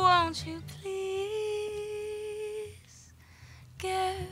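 A woman's voice holding one long wordless sung note, steady in pitch for about a second and a half. After a brief pause, another note starts near the end.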